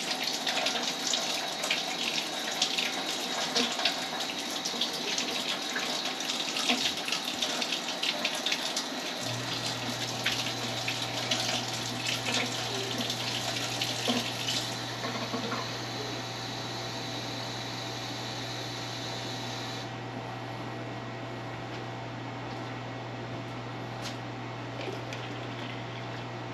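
Kitchen faucet running into a cup as it is filled with lukewarm water, the stream splashing until about fifteen seconds in and then settling to a quieter, steadier hiss. A steady low hum sets in about nine seconds in.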